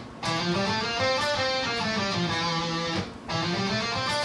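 Schecter Hellraiser C1 electric guitar playing the second mode of the minor scale, single notes picked one at a time in a run that climbs and then comes back down. The run pauses briefly about three seconds in, then more notes follow.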